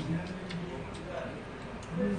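A few light clicks of chopsticks against a noodle bowl, over a low murmur of voices.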